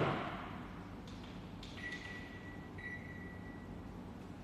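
A single sharp thump that rings on briefly in a large, echoing room, followed a couple of seconds later by a faint, steady high-pitched tone lasting about two seconds with a short break in the middle.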